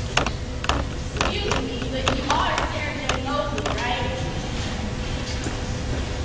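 Indistinct voices of actors speaking on stage, picked up from a distance, with scattered sharp clicks and knocks over a steady low rumble.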